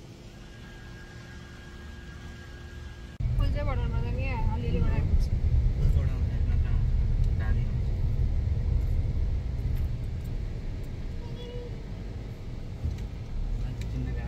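Steady low rumble of a car's road and engine noise heard inside the cabin, starting suddenly about three seconds in. A voice is heard briefly over it just after it starts. Before the rumble there is a quieter faint hum.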